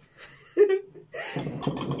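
A woman laughing, a short giggle that starts about a second and a half in, after a brief vocal sound about half a second in.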